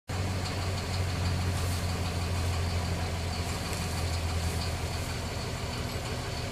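An engine idling steadily with a low, even hum.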